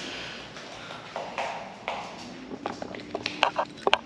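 Footsteps and handling knocks: a run of short clicks and taps that grows busier in the second half, with a few brief metallic pings.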